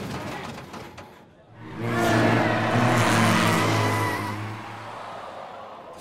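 Cartoon sound effects of a race car breaking down: engine noise dying away, then, about two seconds in, a louder stretch of low droning and hiss that fades out, with music underneath.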